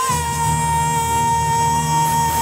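A woman belting one long, high sustained note into a microphone over a steady amplified backing track. The note slides briefly into pitch at the start and wavers slightly near the end.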